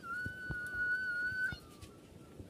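A single high whistle note that swoops up into pitch and is then held steady for about a second and a half before it stops.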